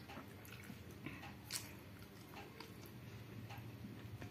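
Fingers mashing and picking through fish curry in a small steel bowl: faint wet squishing with scattered small clicks, one sharper click about a second and a half in.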